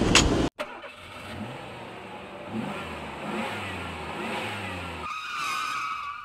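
A vehicle engine revving, its pitch rising and falling, with a higher sustained tone near the end. It follows two sharp knocks and a sudden cut in the first half second.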